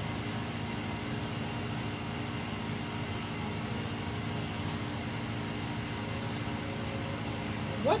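A steady, even machine hum with a faint high hiss above it, holding at one level throughout.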